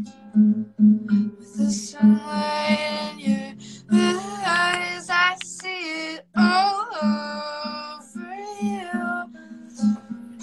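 A woman singing with her own strummed acoustic guitar, a song performed live: sung phrases over a steady strumming pattern, with a short break in the voice about six seconds in.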